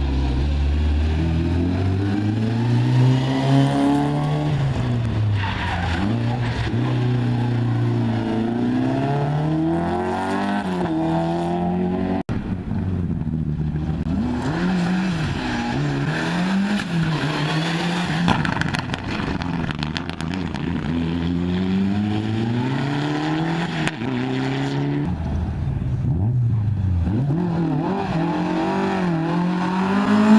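Rally cars driven hard past the camera one after another, a small yellow hatchback, then a Mitsubishi Lancer Evolution, then a Mk1 Ford Escort. Each engine revs up and drops back again and again through gear changes, and the sound cuts abruptly from one car to the next about 12 and 24 seconds in.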